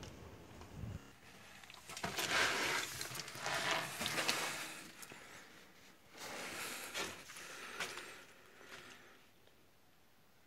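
Scuffing and rustling of someone climbing down steep stone steps into a narrow tunnel: about four long, hissy scrapes with quieter gaps between.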